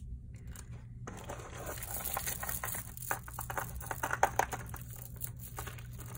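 A plastic zip-top bag crinkling as hands rummage through the loose costume jewelry inside it, with scattered small clicks. It starts about a second in.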